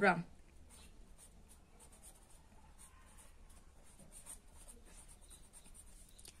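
Felt-tip marker writing on paper: a run of faint, short scratchy strokes as a word is written out.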